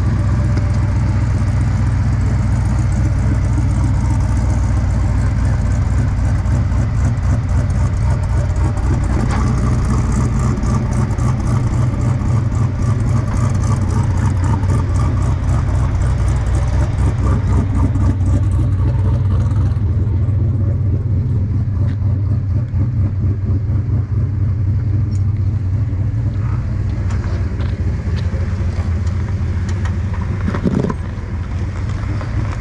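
Modified Jeep Wrangler engine running at low, steady crawling speed as the Jeep climbs over sandstone rock ledges: a steady low rumble that turns duller about two-thirds of the way through.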